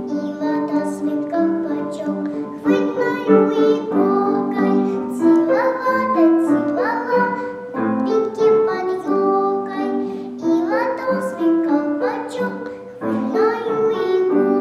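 A five-year-old girl singing a children's song solo with piano accompaniment, holding and sliding between sustained notes.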